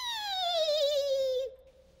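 A long, wavering spooky cat meow that slides down in pitch and stops about a second and a half in.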